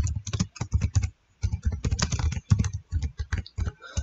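Typing on a computer keyboard: a quick run of keystrokes, a short pause about a second in, then more keystrokes.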